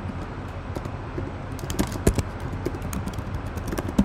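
Typing on a computer keyboard: a run of quick key clicks in bunches, with a sharper click near the end, over a steady low hum.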